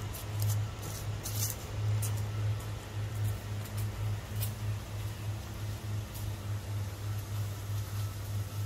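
Footsteps through grass and fallen leaves on a woodland path, with scattered rustles, over a low steady hum that swells and fades about twice a second.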